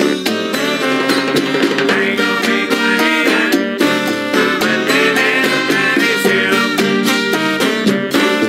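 Salsa recording with a tres guitar solo: fast plucked-string runs over the band's rhythm section and percussion.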